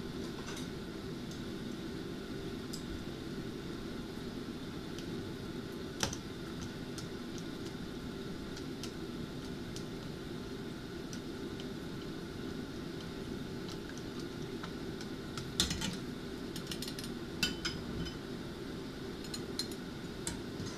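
A metal ladle and chopsticks clicking lightly against a stainless pot as miso is dissolved in the ladle, once about six seconds in and in a cluster of clicks near the end, over a steady low hum.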